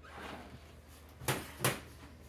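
Two sharp knocks about a third of a second apart, a little past a second in, as a ceramic bowl is set down on the kitchen counter.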